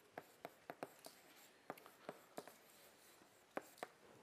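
Chalk writing on a blackboard, faint: a run of short, sharp, irregular taps and brief scratches as words are chalked up.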